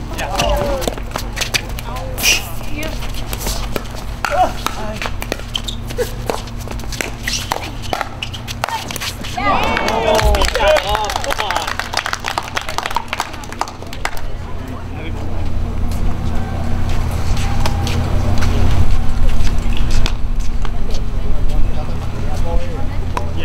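Pickleball rally: paddles striking the plastic ball in a quick run of sharp pops through the first several seconds. Voices follow about ten seconds in, then a steady low rumble builds through the second half.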